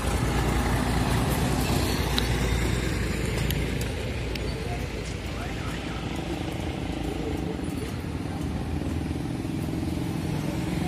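Road traffic passing close by: a tractor pulling a loaded trailer rumbles past in the first few seconds, louder than what follows. Motorcycles then ride by for the rest.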